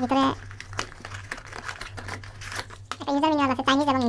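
Cardboard box and paper packaging being handled and pulled apart, giving irregular rustles and crinkles between bits of speech.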